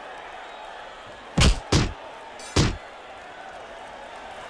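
Three loud, sharp impacts, two close together about a second and a half in and a third about a second later, over a steady background of arena crowd noise.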